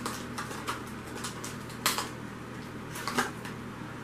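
Scattered light clicks and taps of steel drill bits being handled and sorted by hand, about a dozen irregular ticks, over a faint steady low hum.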